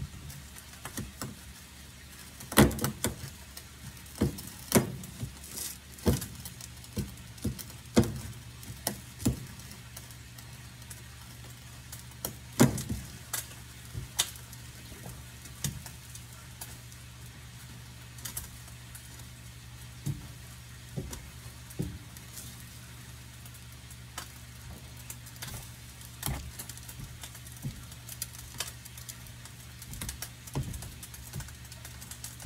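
Irregular knocks and clicks of a utensil against a pan as eggs are stirred, busiest in the first half and sparser later, over a steady low hum.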